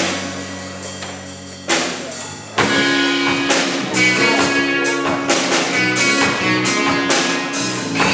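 Live rock band playing: electric guitar chords over a drum kit with cymbal crashes. A struck chord fades out, another is struck about two seconds in, and from about the third second the band plays on steadily with repeated cymbal hits.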